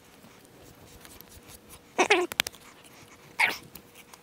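A Scottish Highland bull blowing out hard through its nose twice, a short snort about halfway through and another a second and a half later, with a couple of faint clicks between them.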